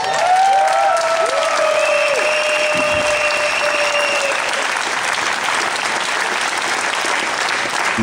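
Audience applauding steadily after a line in a speech, with a few long drawn-out cheering calls over the first four seconds or so.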